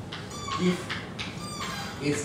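Chalk writing on a blackboard: taps and scrapes of the chalk, with two short high-pitched squeaks as it drags across the board.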